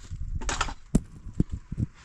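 Household handling noises: a few irregular soft knocks and brief rustles as plastic bags and pots are moved about.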